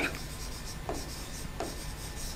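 A pen writing on an interactive flat panel's touchscreen: faint strokes, with two short soft marks about a second and a second and a half in.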